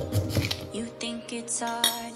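Light clinks and knocks of kitchenware being handled on a counter, several in quick succession, with music playing underneath.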